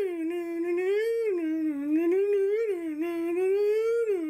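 A single sustained humming tone that wavers slowly up and down in pitch without a break.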